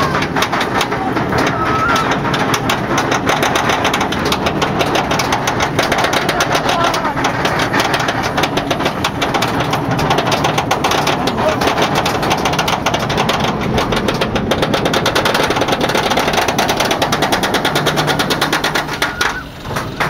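Roller coaster chain lift hauling the train up the lift hill: a loud, fast, steady clatter of the chain and ratcheting anti-rollback. It drops away briefly near the end as the train reaches the top.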